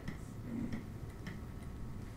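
Light clicks and ticks at an uneven pace, a few a second, over steady low room noise.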